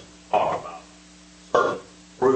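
A person's voice in two short, indistinct bursts, about half a second in and again near the end, over a steady low room hum.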